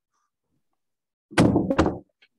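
Near silence, then a short loud thud about a second and a half in, lasting about half a second.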